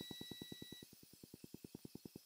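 Faint, rapid, even pulsing, about a dozen pulses a second, in a semi-truck's cab just after the ignition is switched back on, slowly fading; a faint high steady tone stops about a second in.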